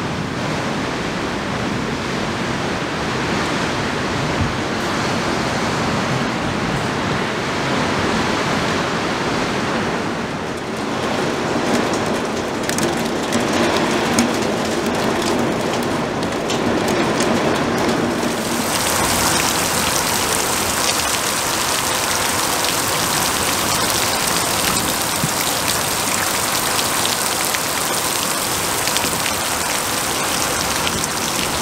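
Heavy rain and gusting wind in a storm, a steady hiss. At first it is muffled, heard through a closed window. About two-thirds of the way through it turns suddenly brighter and sharper as the rain is heard in the open.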